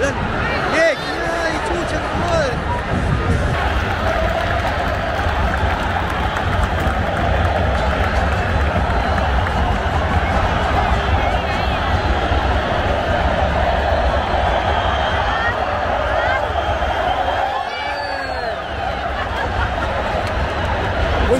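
Large football stadium crowd: thousands of supporters' voices chanting and shouting together in a dense, steady din, easing slightly near the end.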